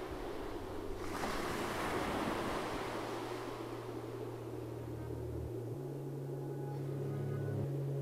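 Waves washing on open water, a steady rushing that swells about a second in and slowly eases. Underneath, low sustained drone tones that shift pitch a few times in the second half.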